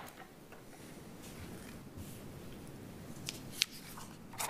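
Faint, steady room tone in a hearing room, with a few light clicks and rustles, the sharpest a single click shortly before the end.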